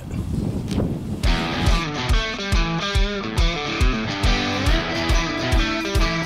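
Background music: a rock track with guitar and a steady drum beat, coming in about a second in.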